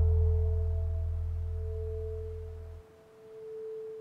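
Meditation track fading down: a deep low drone fades and stops about three seconds in, leaving a steady pure tone near the track's 432 Hz base frequency, which swells briefly near the end.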